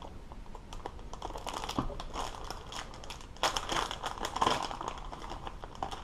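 Plastic PowerBait soft-bait package crinkling as it is handled and opened, the crackling getting louder about three and a half seconds in.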